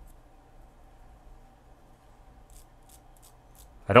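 A few faint, short scratching strokes, about six in quick succession in the second half, as a steel-wool-tipped pick scrubs the contacts of a small plastic slide switch.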